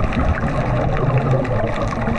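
Bubbling and gurgling water heard underwater, the muffled rush of a swimmer's exhaled air bubbles.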